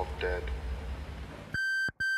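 Faint voices over a low hum, then a loud, steady electronic beep tone starts about one and a half seconds in and breaks off briefly near the end.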